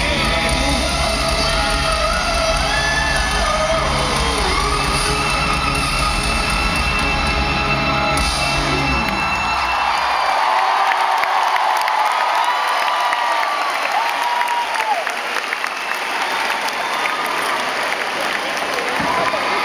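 Loud live rock band playing in an arena over a cheering crowd. About halfway through, the band's low end cuts out and only the crowd's cheering, shouts and whoops remain.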